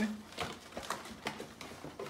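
Paper and cardboard handling as a gift box is unpacked: a few short irregular rustles and light clicks.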